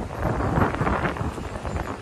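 Wind buffeting the microphone in a steady rush, with street traffic noise behind it.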